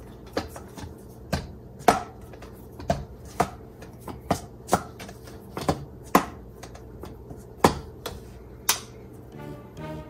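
Sharp clicks and taps, about a dozen at irregular spacing, as the magnetic folding cover flap of a JETech iPad case is folded into a stand and snapped against the case. Soft music comes in near the end.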